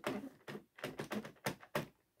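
Light, irregular clicking, about seven clicks in two seconds, from the plastic needles of a circular knitting machine as stitches are moved by hand with a metal tool.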